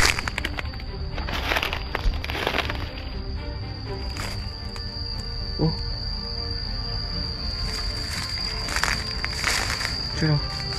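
Background music with a continuous high thin tone, over a few crunching footsteps on dry leaf litter.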